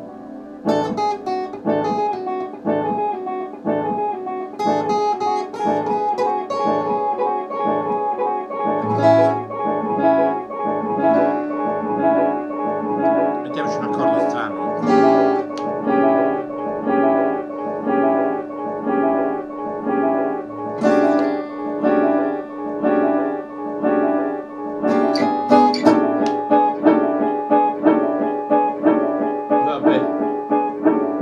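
Steel-string acoustic guitar fingerpicked: a steady, continuous run of plucked notes over bass notes.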